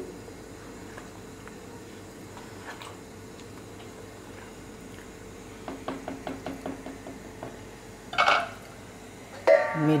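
A spatula stirring a thick curry in a nonstick pot: a quick run of light clicks and knocks against the pot, about five a second, roughly six seconds in, followed by one short louder knock. Before that there is only a low steady background hum.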